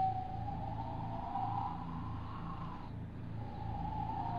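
Background soundtrack drone: a high tone that slowly swells and wavers in pitch, fading out about three seconds in and returning near the end, over a low, evenly pulsing hum.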